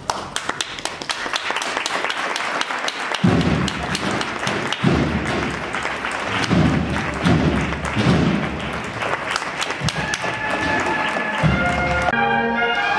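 Crowd applauding and clapping after the cheers for the float. From about three seconds in, a string of deep, heavy thuds joins the applause.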